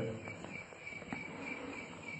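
Faint, steady chirping of insects, an even repeating trill in the background.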